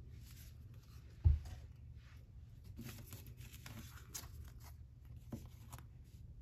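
Oracle cards being drawn and handled: faint rustling and sliding of card stock, with one low thump just over a second in, the loudest sound.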